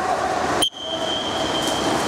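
Swimming start signal: a sharp click, then a steady high-pitched beep held for a little over a second, over the constant hum of an indoor pool hall.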